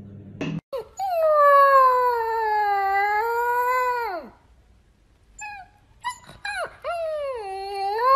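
Puppy howling: one long howl of about three seconds that sinks slowly in pitch and then drops away, a few short yips in the pause, then a second howl starting about seven seconds in.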